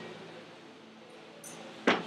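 A single sharp knock near the end, as a kettlebell is driven overhead in a jerk and the lifter drops under it, feet landing on a wooden platform. A faint tick comes just before it.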